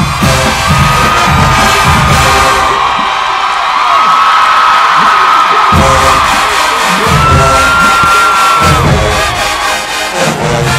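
Marching band brass holding long high notes over bass drums and percussion, with the crowd cheering. The low drums drop out for a couple of seconds about three seconds in while the brass holds on, then come back.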